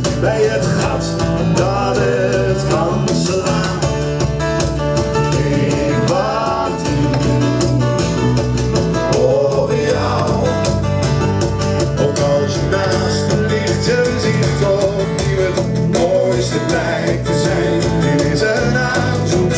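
Live acoustic band playing: strummed acoustic guitars over a bass guitar, with voices singing a melody without clear words.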